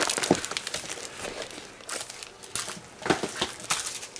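Clear plastic binder sleeves and stamp-set packaging crinkling as they are handled, in irregular bursts, with louder crackles about three seconds in.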